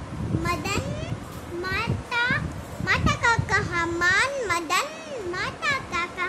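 A young girl's voice reading aloud from a Hindi book, her pitch rising and falling in a sing-song way.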